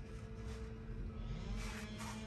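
A steady low hum, with a faint brief rustle of hand-handling noise near the end as pipe dope is worked onto a steam radiator's valve union.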